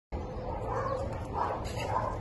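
A dog barking, three short barks roughly half a second apart, over a steady low rumble.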